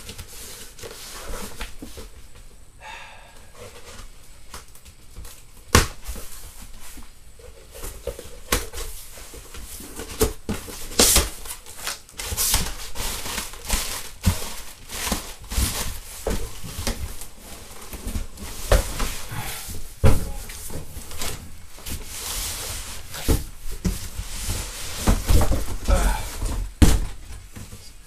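Cardboard shipping box being opened and handled: a long, irregular run of scrapes, knocks and rustles of cardboard, with heavier thumps near the end.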